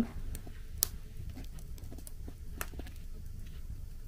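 Wood fire crackling in the firebox of a masonry stove shortly after lighting: faint, irregular sharp pops, the loudest about a second in.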